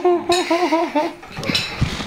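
A woman's closed-mouth vocal reaction to the taste of fermented skate: a high 'mmm' whose pitch wobbles up and down about five times for a second or so. A few light knocks follow near the end.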